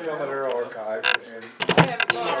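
Indistinct conversation among several people in a room, with a quick run of sharp knocks or clatter near the end.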